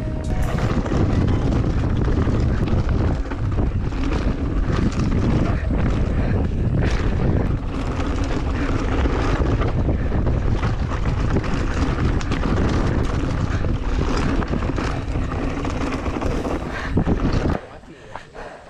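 Wind buffeting the action-camera microphone and a Giant Reign enduro mountain bike's tyres and frame rattling over a rough dirt trail at speed, with many small knocks and clicks. The noise cuts off suddenly near the end as the bike comes to a stop.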